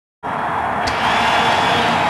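A loud, steady rushing noise that starts abruptly just after the beginning, with a short click about a second in.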